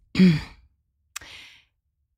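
A woman's short voiced sigh falling in pitch, then about a second later a mouth click and a brief breathy in-breath.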